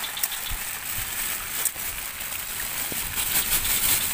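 Steady hiss of rain falling on forest leaves, with a few faint light taps.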